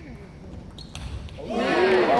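Table tennis ball clicking off the bats and table during a rally, followed about a second and a half in by loud voices shouting as the point ends.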